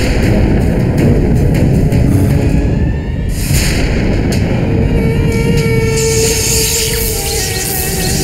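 Ominous, suspenseful background score with a deep, dense rumbling low end; a held tone comes in about five seconds in as the higher sounds build.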